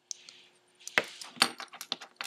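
Small metal fishing tackle, a snap swivel on a homemade bottle cap lure, being worked in the fingers: a short rustle, then a quick run of sharp little metallic clicks and clinks.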